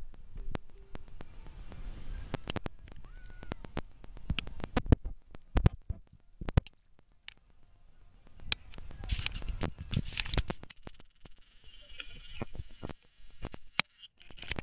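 Irregular clicks, knocks and crackles from a handheld phone being handled, over a low rumble of road noise inside a moving car.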